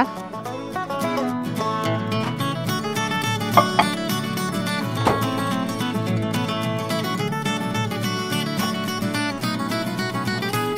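Background instrumental music with plucked strings, with a couple of brief clicks in the middle.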